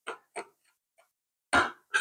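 A metal spoon scraping and knocking against a glass bowl while stirring dry powders (cocoa, cornstarch and sugar): two short scrapes in the first half second and a faint tick about a second in. A louder brief sound comes near the end.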